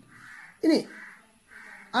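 Faint bird calls in the background, three in a row about two-thirds of a second apart, with one short spoken syllable from a man between the first two.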